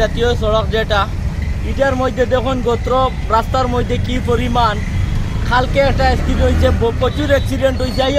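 A man speaking, over a steady low rumble of road traffic.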